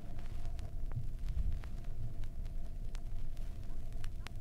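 Vinyl record surface noise with no programme: a low rumble with scattered faint clicks.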